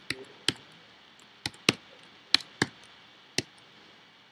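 Computer keyboard being typed on: about seven separate keystrokes, spaced unevenly.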